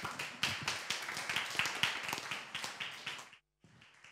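Small audience applauding. The dense patter of clapping cuts off abruptly about three and a half seconds in.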